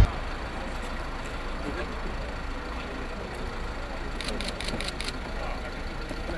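Outdoor street ambience: the steady low rumble of an idling vehicle engine under faint voices. A quick series of about half a dozen sharp clicks comes between four and five seconds in.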